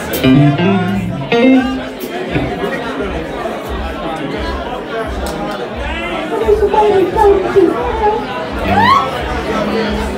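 A live band of electric guitars, electric bass and drums playing with a steady beat, under loud crowd chatter close to the microphone.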